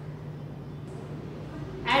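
Steady low hum of room tone with no other sound, then a woman's voice begins a word just before the end.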